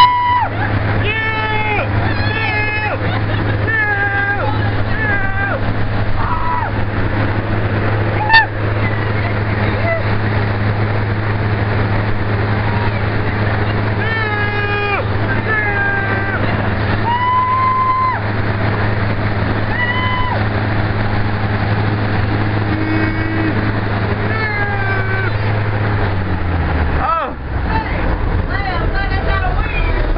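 Hurricane-simulator blowers driving wind at up to 71 mph over the microphone, a steady low hum and rush, with people screaming and yelling through it. There is a sharp knock about eight seconds in, and the blowers wind down and stop about 26 seconds in.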